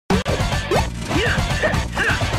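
Animated-intro music: an electronic track that starts with a sudden crash, with quick sliding whoosh and swoop effects over a steady bass.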